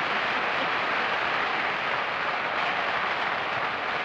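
Studio audience applauding steadily for a panelist's entrance.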